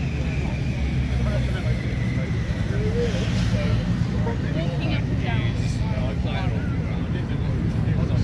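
A motorcycle engine idling steadily, with faint voices over it.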